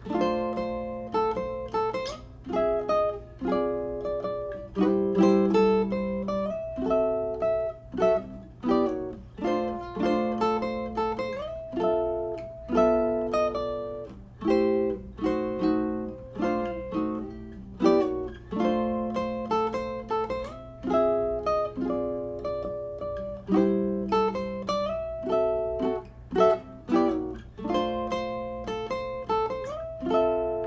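Ukulele music: a melody of plucked single notes over chords, with a steady low hum underneath.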